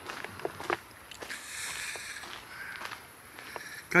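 Footsteps on a fine gravel path: a scatter of soft, irregular crunches over a faint, steady outdoor hiss.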